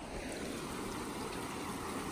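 Pond water running steadily out through the breach in a broken beaver dam, a continuous stream-like rush that drains the pond.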